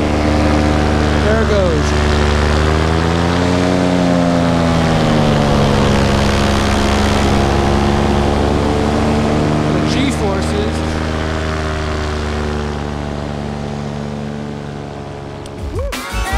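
Moster 185 two-stroke paramotor engine running in flight, with a haze of rushing air over it. Its pitch rises and falls back once, about three to five seconds in, and it grows a little quieter near the end.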